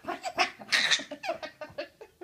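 A toddler laughing in a quick run of short bursts, with a louder breathy burst just before a second in.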